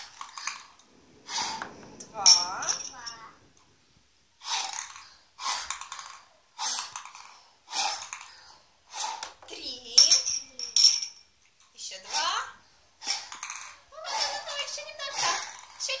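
A child blowing hard into drinking glasses in short repeated puffs, about one a second, to lift ping-pong balls out; some puffs carry a bit of voice, and there are light clinks of the balls against the glass.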